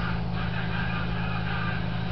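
Room air-conditioning unit running: a steady low hum under an even hiss.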